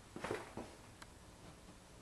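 Faint footsteps and soft handling knocks as a person moves about close to the camera, with one small sharp click about a second in.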